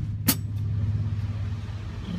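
A steady low hum, with a single sharp click about a third of a second in.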